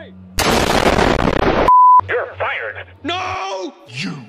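A loud burst of harsh, dense noise lasting about a second, cut off suddenly by a short single-pitch censor bleep, followed by cartoon voices.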